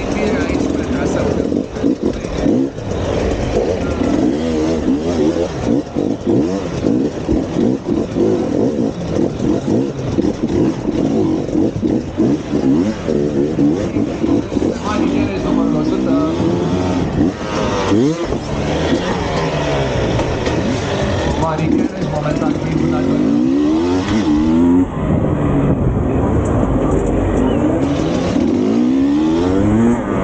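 Enduro motorcycle engine heard close up from on the bike, revving up and down over and over as the rider works the throttle through the course, its pitch climbing and dropping every second or two.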